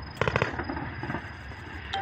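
Distant weapons fire on a live-fire range: a quick burst of several sharp reports about a quarter second in, over a steady background rumble.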